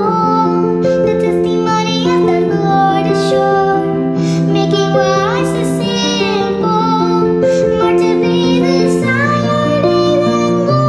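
A young girl singing a song over instrumental accompaniment, with long held and gliding notes.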